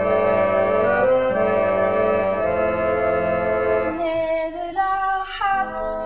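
Music: sustained organ chords that change about once a second, joined about four seconds in by a singing voice that slides down in pitch near the end.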